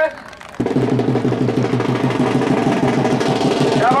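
Fast, steady drum roll that starts suddenly about half a second in and keeps going, with a male voice over the loudspeaker briefly at the start and again near the end.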